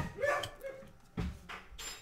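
A dog barking in the background, with a sharp click and a brief rustle of baseball cards being flipped by hand.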